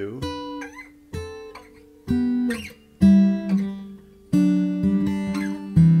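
Steel-string acoustic guitar played fingerstyle: about seven separately picked notes and two-string chords, roughly one a second, each left to ring, with a short downward slide about two and a half seconds in.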